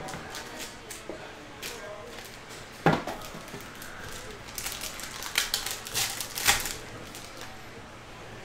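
Trading-card box and pack being handled: a few light clicks, a sharp knock about three seconds in, then a run of crinkling and clicking as the pack is opened and the cards slid out.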